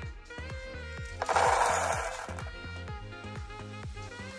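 Background music with a beat, and about a second in a brief rattling rush of dry popcorn kernels poured from a metal measuring cup into a silicone microwave popcorn bowl.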